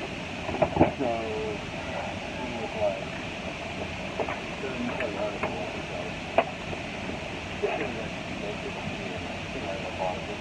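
Steady air noise inside an airliner cabin, with background passenger voices murmuring and a couple of sharp knocks, one near the start and one about six seconds in.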